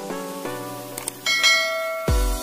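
Music with chiming bell-like notes and subscribe-button sound effects: a short click, then a bright high bell chime a little over a second in.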